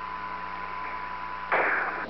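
Steady hiss of static on a space-to-ground radio link, with a louder burst of static about one and a half seconds in.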